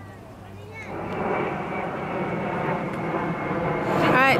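A jet airliner passing low overhead: its engine noise swells about a second in and then holds loud and steady, with a high whine over the rumble.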